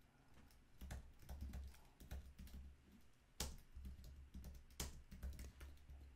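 Faint typing on a computer keyboard: irregular keystrokes, with two louder strokes about three and a half and five seconds in.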